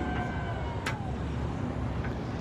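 Steady low rumble of a boat's engine and passing water, heard on board a harbour boat. A thin high tone fades out with a downward bend in the first half second, and there is one sharp click about a second in.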